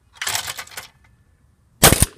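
Spring-loaded throwing arm of a Do-All Outdoors clay pigeon thrower released, a clattering burst of about half a second as it launches a clay. About a second later a single shotgun shot, the loudest sound.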